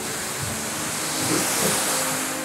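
Steady rushing hiss of water spray from the Pulsar splash coaster's splashdown, a cloud of mist and droplets raining down over the lake and platform.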